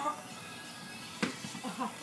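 A single sharp knock about a second in as a man falls from a metal dip bar stand onto the grass, followed by faint voices.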